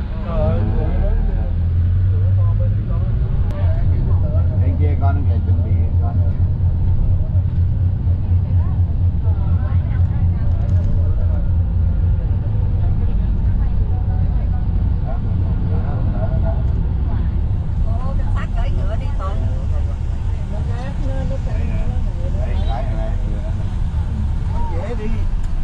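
Low, steady rumble of a minibus engine and road noise heard from inside the moving cabin, with indistinct chatter from passengers.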